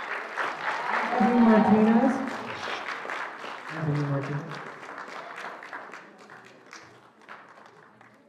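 Audience applauding, the clapping thinning out and fading away over the last few seconds.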